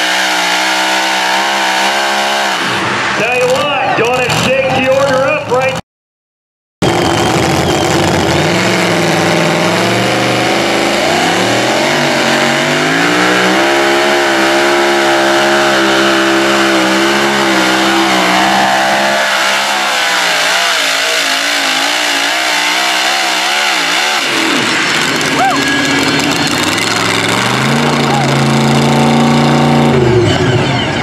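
Big-inch pulling-truck engines at full throttle during truck-pull runs. The first engine falls off about two seconds in as its pass ends; a few seconds later a supercharged pulling truck's engine winds up and holds high under load, drops back, then climbs again near the end.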